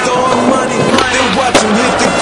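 Skateboard on concrete with a sharp clack about one and a half seconds in and a smaller one near the one-second mark, under a song playing.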